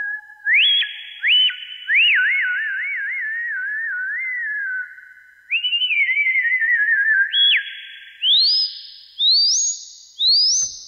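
Casio CZ-101 synthesizer playing a single whistle-like tone, bent up and down with its pitch bender into warbling swoops like bird calls, with quick rising chirps near the end. Reverb leaves a trailing tail after each note.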